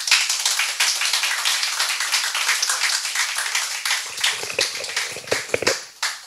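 Audience applauding: dense clapping from many hands that starts suddenly and thins a little in the last couple of seconds.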